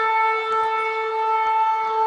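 A shofar blowing one steady held note.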